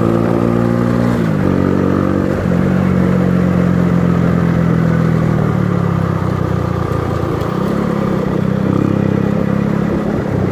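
A 70cc single-cylinder motorcycle engine running under way, its pitch falling about a second in and then holding steady, with a brief dip and rise near the end.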